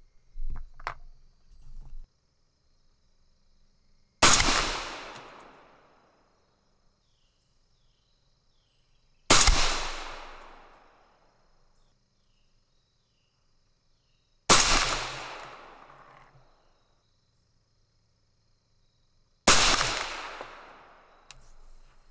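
A suppressed 6mm ARC AR-style rifle fires four handloaded rounds, one shot about every five seconds. Each shot is followed by an echo that dies away over about two seconds. A few light handling clicks come in the first two seconds.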